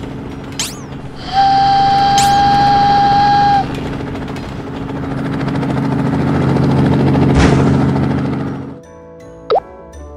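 Cartoon sound effects over a low steady hum: quick plopping sweeps, then a held whistle tone for about two seconds. A swelling toy-helicopter engine noise follows and cuts off suddenly about nine seconds in, leaving light music with a plop.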